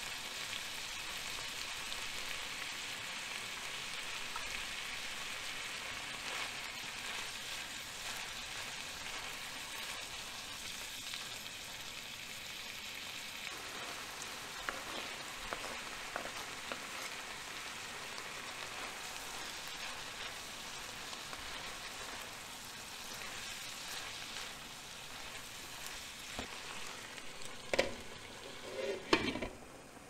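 Ground beef, bell peppers, corn and tomato sizzling steadily in a frying pan, with a few light clicks in the middle. Near the end a glass pan lid knocks twice against the pan as it is set on, and the sizzle drops.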